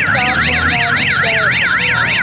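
A siren in a fast yelp pattern, its pitch sweeping up and down about four times a second.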